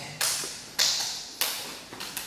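Sharp hand slaps, three at an even pace about half a second apart, each with a short echo. Palms are striking the partner's knife arm in a knife-defence parrying drill.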